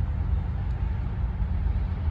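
Low, uneven rumble of an approaching freight train's diesel locomotives, still far off down the track.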